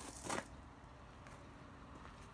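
A brief scuffing rustle near the start, then only faint steady background noise.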